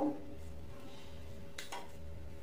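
A single short snip of scissors cutting through soft flatbread (kubos) about three-quarters of the way in, over quiet room tone with a faint steady hum.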